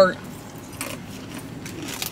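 Keys jangling, with scattered light metallic clinks as they are handled.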